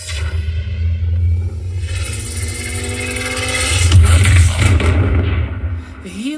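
A car commercial's soundtrack, engine sound mixed with music and heavy deep bass, played at full volume through a 2.1 speaker system with subwoofer. A held note runs for the first few seconds, and the loudest surge comes about four seconds in.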